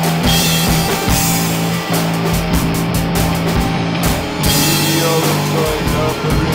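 Rock music with a drum kit keeping a steady beat over held low notes that change pitch about two seconds in and again past the middle.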